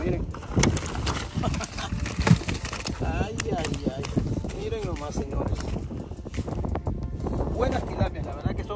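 Wind rumbling on the microphone, with a voice-like sound running through it and a few sharp knocks as a plastic bucket is handled and tilapia are tipped out of it onto grass.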